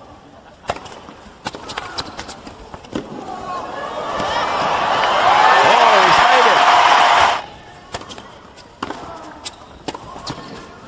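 Tennis ball struck with rackets in a rally, a sharp hit about every half second, then an arena crowd cheering and shouting as the point ends, cut off suddenly a little after halfway. A few more racket hits follow near the end.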